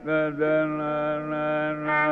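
Carnatic music in raga Yadukula Kambhoji: a voice holding long, steady notes over a continuous low drone, a new phrase entering right at the start.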